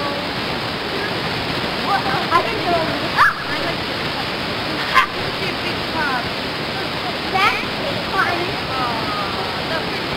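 Steady rushing noise with faint, distant voices and children's calls rising and falling over it. There are two short sharp sounds, at about three and five seconds.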